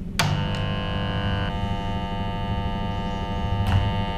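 A switch clicks on, then a demonstration transformer's laminated iron core buzzes steadily at mains frequency. The transformer is under heavy load: its 6-turn secondary is shorted through a nail that is being heated to melting. The buzz changes in tone about a second and a half in, and there is a brief click near the end.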